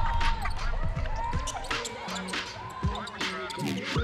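Basketballs bouncing on a hardwood court, many sharp thuds in quick succession, with sneakers squeaking on the floor. A low bed of music sits under them.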